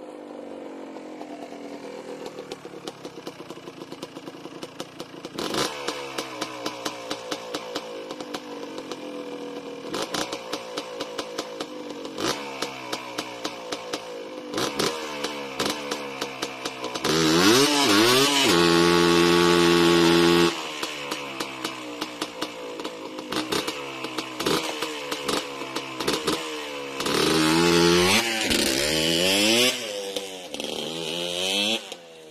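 Yamaha Blaster's single-cylinder two-stroke engine revving up and dropping off again and again as the ATV is ridden on dirt, with a rapid ticking at lower revs. The loudest part is about three seconds of steady high revs about seventeen seconds in, close by, with the rear wheels spinning in a burnout. A second hard rev burst comes near the end.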